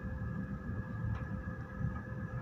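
Steady low electric-motor hum with a constant whine, and a faint scrape about a second in.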